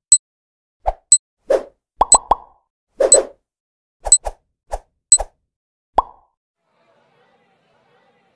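Countdown intro sound effects: a quick run of short pops and clicks, a few each second, some with a bright ringing tick on top. They stop about six seconds in.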